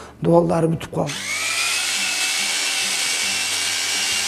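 Electric drill with a paddle mixer stirring a bucket of white building mix. Its motor starts about a second in, whining up briefly to speed, then runs steadily.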